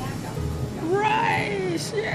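A person's voice giving one drawn-out exclamation, about a second long, rising and then falling in pitch, nearly halfway in.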